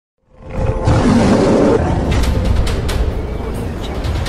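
Intro sound effects: a low animal roar over music, with swishes, starting loudly a moment in.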